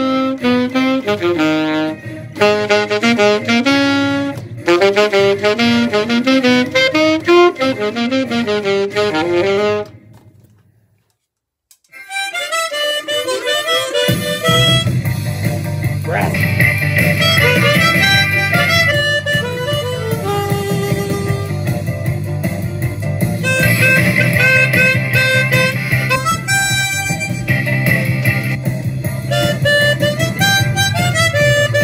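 Alto saxophone playing a melody that stops about ten seconds in. After a couple of seconds of silence, a blues band backing track with a steady low beat starts, and harmonica playing joins it.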